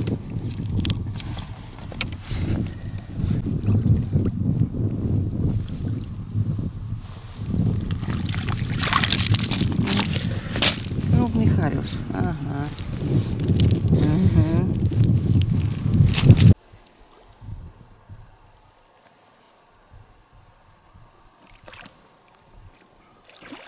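A wet gill net rustling and crackling as fish are worked free of its mesh by hand, mixed with a person's voice now and then. About three-quarters of the way through, the sound cuts off abruptly, leaving faint water sounds.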